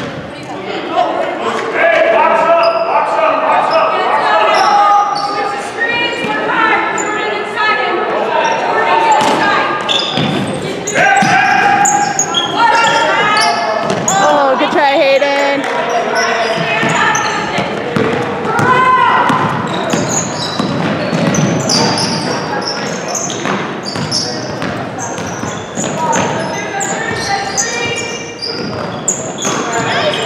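Basketball dribbled on a hardwood gym floor, with players' and spectators' voices echoing through a large gym.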